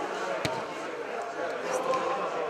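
A football kicked once with a sharp thud about half a second in, over the steady chatter of a watching crowd.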